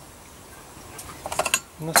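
A few light metal clinks about one and a half seconds in, as the metal simmer lid of a Trangia spirit burner is lifted off the just-extinguished burner and set down.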